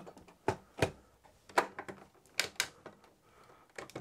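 Hard plastic clacking and knocking as 3D-printed blaster parts are handled and the hopper is fitted on: a handful of sharp, irregular clacks over a few seconds.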